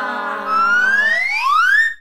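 Comic music sting: a held low chord fades while a pitched, whistle-like tone glides smoothly upward and cuts off suddenly at the end.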